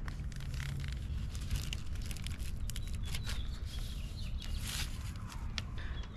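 Plastic zipper-lock bag being pressed shut and handled: scattered light crinkles and small clicks over a steady low background rumble.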